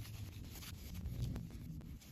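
Faint rubbing and rustling of cotton fabric worked between the fingers, with a few soft ticks, as a sewn fabric tube is pushed right side out by hand.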